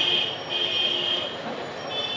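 A high-pitched squeal of a few close steady tones, breaking off briefly twice and coming back near the end, over steady street noise.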